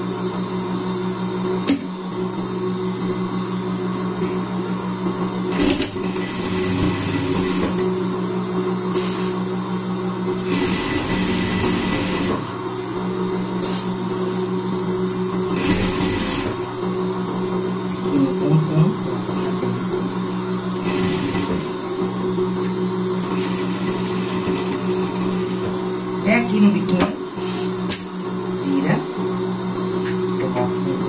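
Industrial straight-stitch sewing machine sewing a seam through fleece in several short runs, stopping and starting between them, over a steady motor hum.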